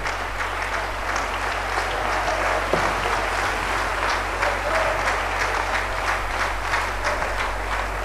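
Congregation applauding: many hands clapping in a steady, even stretch of applause, with a low steady hum underneath.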